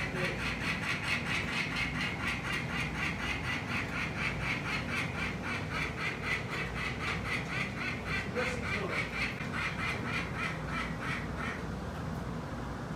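Adult peregrine falcon giving its harsh, rapid kak-kak-kak alarm call, about four or five calls a second in a long unbroken run that stops shortly before the end. It is the scolding of a parent defending the nest from a person climbing up to it.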